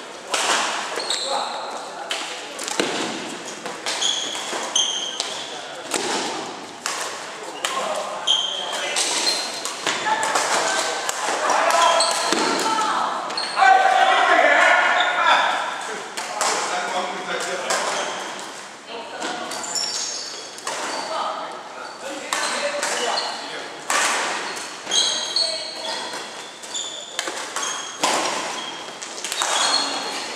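Badminton play in a large echoing hall: repeated sharp racket strikes on the shuttlecock, short high squeaks of court shoes on the wooden floor, and players' voices, loudest about midway.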